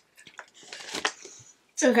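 A few light clicks, then a soft scrape and rustle of a utensil and packaging handled on a tabletop, as a frosting scraper is wiped clean. A woman's voice comes in near the end.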